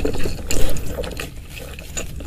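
Close-miked mouth sounds of chewing a mouthful of food, a rapid run of wet clicks and smacks, loudest about half a second in and quieter toward the end.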